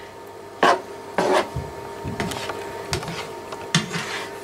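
Black plastic slotted spatula scraping and stirring chopped cauliflower and beaten egg around a non-stick frying pan, in about five short scrapes.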